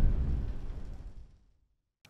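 The low boom of a logo intro sting dying away, fading out over about a second into silence.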